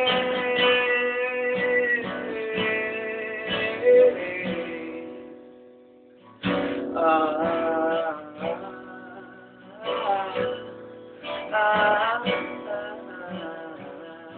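Guitar playing an instrumental break in a live song: ringing chords fade away over the first five or six seconds, then picked and strummed chords start up again and carry on.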